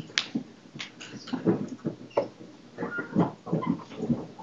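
A run of short, irregular knocks, bumps and rustles close to the microphone, from objects being handled and moved at the lectern.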